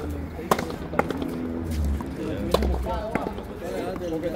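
Ball struck by racquets and hitting the frontón wall during a rally: a handful of sharp cracks, irregularly spaced about half a second to a second apart.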